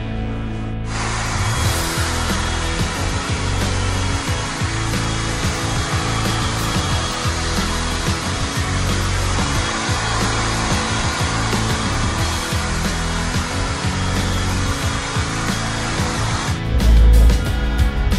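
Hair dryer blowing steadily, switched on about a second in and off shortly before the end, over background music.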